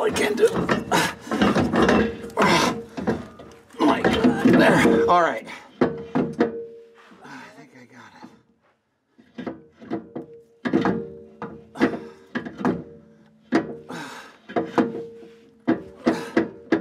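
Irregular knocks, clunks and scraping of a Ford 8-inch differential center section being worked against the axle housing and its studs as it is jacked up into place. The knocks come thick for the first few seconds, pause briefly past the middle, then start again.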